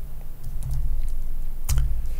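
A computer keyboard being typed on: a few separate keystrokes, the loudest near the end, over a low steady hum.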